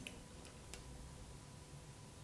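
Near-quiet workshop with three faint clicks in the first second as a hydraulic disc-brake hose is handled and threaded through the frame's hose guide.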